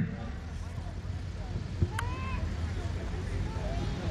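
Jeep engine idling with a steady low rumble, with faint voices of onlookers in the distance.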